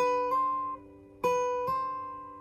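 Acoustic guitar playing a single high note twice, about a second and a quarter apart. Each note is plucked, then steps up slightly in pitch on the fretting hand without a new pluck, and fades.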